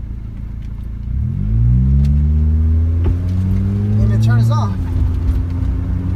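A 1991 Honda Civic's four-cylinder engine, heard from inside the cabin, pulling away from a stop. The revs climb about a second in and hold for a few seconds, then drop back near the end as the automatic gearbox shifts up.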